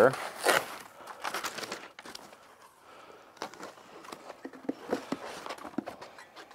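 White packing wrap being handled and pulled off a charger, with irregular crinkling rustles and small clicks.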